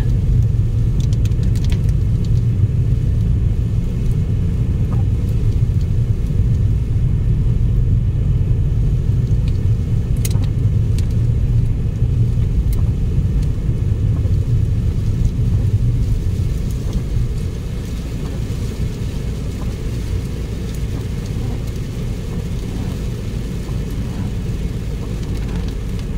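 Steady low rumble of a car driving on a wet road, heard from inside the cabin: engine and tyre noise, easing slightly about two-thirds of the way through.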